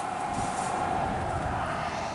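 A road vehicle passing on the highway: a steady hum that swells to a peak about a second in, its pitch dropping slightly as it goes by.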